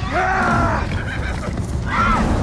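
A loud animal call that rises, holds and falls within the first second, over a steady low rumble.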